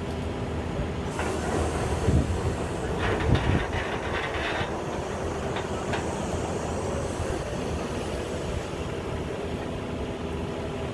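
Truck-mounted borewell drilling rig running steadily with a low rumble, with a few louder knocks about two and three seconds in as the crew handles the drill pipe.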